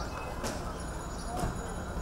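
City street ambience with a steady background noise and indistinct distant voices, broken by a couple of sharp clicking knocks, one about half a second in and another about a second and a half in.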